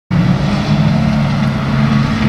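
A pack of stock hatchback autograss cars' engines running hard together as they pull away from the start line on dirt, heard as a steady, loud multi-engine drone.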